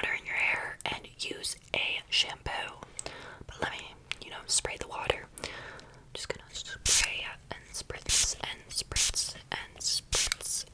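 Soft close-up whispering with several short hissing spritzes from a plastic trigger spray bottle.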